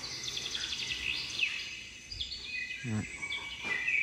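Birds chirping and calling, one call gliding down in pitch about a second in, over a faint steady high trill like an insect.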